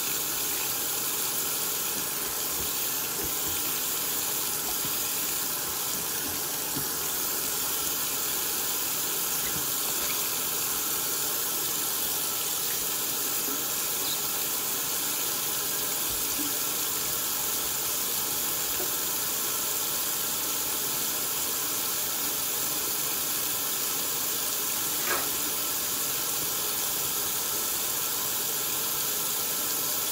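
Kitchen faucet running a steady stream of water into a stainless steel sink with soap suds. There is one short knock about 25 seconds in.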